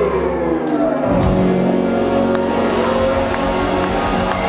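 Live rock band playing, with a long falling glide in pitch over the first second, then the full band and drums carrying on.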